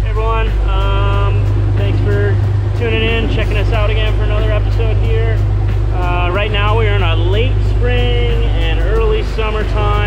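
The boat's engines drone steadily and low under a man's close-up talk.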